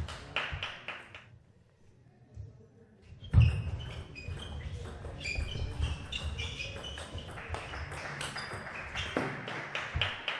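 Table tennis ball clicking off rackets and table in quick exchanges, with a short pinging ring on the strokes. The hits come in two spells, a short one at the start and a longer one from about three seconds in, with a lull of about two seconds between them. One loud thud comes just before the second spell.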